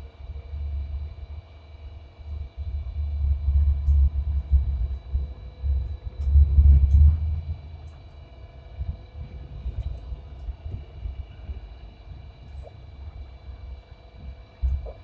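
Hong Kong Light Rail Phase 1 tram car running on its track, heard from inside: a low rumble of wheels and running gear that swells twice in the first half, then grows quieter as the car slows toward a stop. Faint steady whines and a few light clicks run beneath it.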